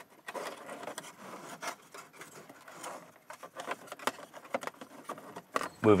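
Plastic dashboard trim of a 2001 Ford F-150 being pulled and worked by hand: scattered light clicks, rubs and scrapes of plastic against plastic as the trim piece behind the steering wheel is eased free.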